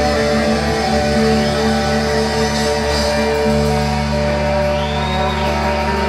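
Live rock band playing: held bass and guitar chords under an electric lead guitar whose high notes glide up and down. The low note changes about halfway through.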